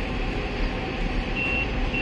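Low steady rumble of traffic. Near the end a high, single-pitched electronic beep sounds twice: a vehicle's reversing alarm.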